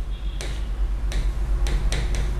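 A stylus tip tapping on an interactive whiteboard as a word is handwritten: about five sharp, irregular ticks, starting about half a second in.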